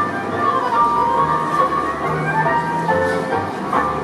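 Tango music accompanying street dancers: a sustained melody that slides between notes over low bass notes.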